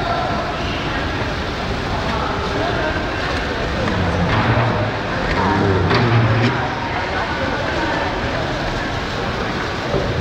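Busy train-station hall ambience: indistinct voices over a steady din, with a few sharp clacks around the middle.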